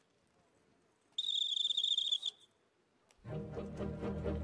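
A whistle blown once, a high trilled note lasting about a second, signalling the start of the shaving contest. Low orchestral music comes in near the end.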